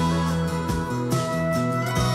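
Background music: steady instrumental with guitar and plucked strings over bass notes.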